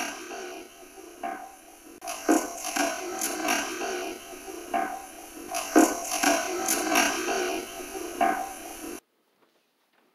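Heavily amplified, filtered recorder audio: a steady hiss with voice-like murmurs and several sharp clicks, which the investigator presents as a spirit voice saying "help my baby". It cuts off abruptly about nine seconds in.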